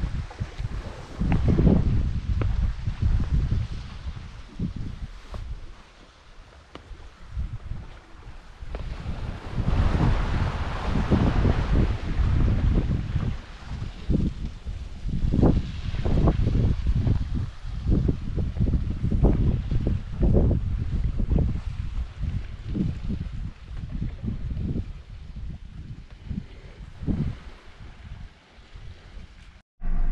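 Wind buffeting the microphone in uneven gusts, swelling and dropping again and again.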